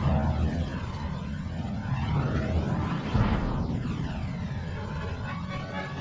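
A deep, steady rumble of explosion and aircraft sound effects from an animated battle scene, starting with a jump in loudness, with music underneath.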